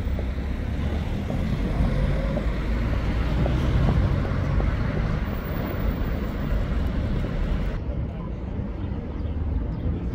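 City street traffic noise: a steady rumble of passing cars and engines. The sound turns duller about eight seconds in.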